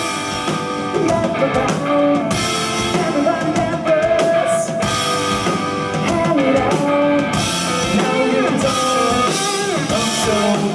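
A live rock band playing loudly: electric guitar over a full drum kit, with held, bending notes above the drumming.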